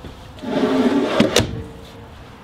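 A wooden kitchen drawer sliding shut on full-extension drawer glides, a rolling rumble for about a second ending in a sharp knock as it closes.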